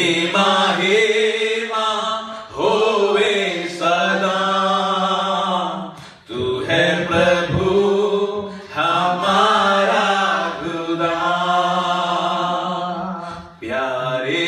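Male voices singing a Hindi worship song into microphones in long, slow, held phrases, with short breaks between phrases about six seconds in and again near the end.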